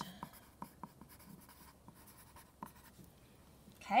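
A pencil writing on lined notebook paper: a series of short, faint scratching strokes as a word is handwritten. The strokes die away after about two and a half seconds.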